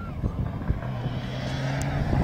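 Mitsubishi Lancer Evo X rally car's turbocharged four-cylinder engine running as the car comes up the gravel stage, a steady engine note becoming clear about a second in.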